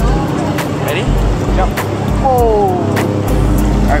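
Pool water sloshing and lapping against a waterproof camera held right at the surface, a low rumble that swells and drops with small splashes and knocks. A short falling tone is heard a little past two seconds in.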